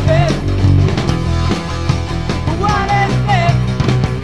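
Punk rock song with drums, bass and a singing voice; the voice comes in near the start and again from about halfway through.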